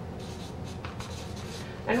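Marker pen writing on flip-chart paper: a run of short strokes as a word is written out. A woman's voice starts right at the end.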